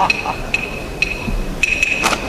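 A man's rhythmic stage laugh trails off, then a few sparse, sharp wooden clicks sound over a low steady hum.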